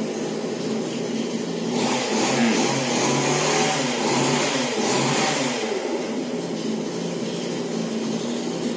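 An engine running throughout, its pitch rising and falling, with the sound swelling and getting noisier between about two and five seconds in.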